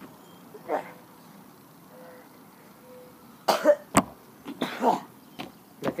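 A person coughing and spluttering in short bursts, about three and a half and five seconds in, with a sharp click between them.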